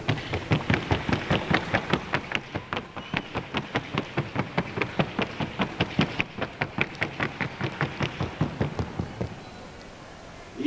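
Rapid, even hoofbeats of a Colombian paso fino horse in its four-beat gait: crisp footfalls about six a second that stop shortly before the end.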